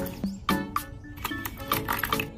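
Background music with a quick, steady beat.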